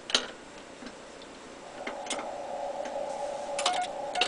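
Ham radio station keying and switching: a sharp click at the start and another about two seconds in. Then the transceiver's receiver hiss, narrowed by a CW filter, fades in and holds steady. Near the end come a quick run of clicks and a few short Morse sidetone beeps.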